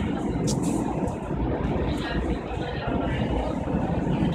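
Inside a Renfe Civia electric commuter train running at speed: a steady rumble of wheels on rail and carriage noise, with a couple of brief clicks.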